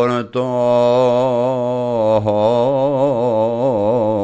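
A man singing a traditional Greek folk song of the Nigrita and Visaltia region, unaccompanied, in long drawn-out notes with a wavering, ornamented pitch. He breaks off briefly for a breath just after the start.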